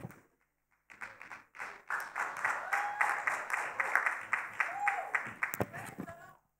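A congregation clapping, swelling about a second and a half in and dying away near the end, with a couple of short voices calling out over it.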